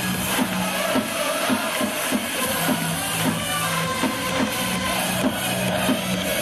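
Upbeat electronic music with a steady beat, played over a baseball stadium's public-address system.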